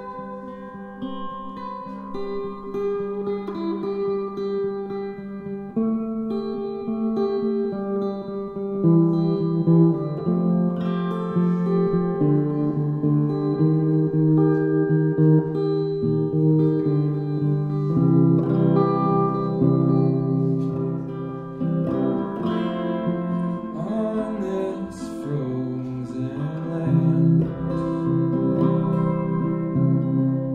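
Live solo guitar played in slow, sustained chords that ring on and build gradually louder through the passage.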